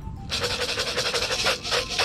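Dry floating fish-feed pellets rattling in a plastic bucket as it is handled: a dense run of small clicks lasting about a second and a half.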